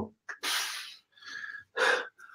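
A man's breath sounds, not words: a quick sharp intake, then a longer breathy exhale like a sigh, followed by a few softer breaths.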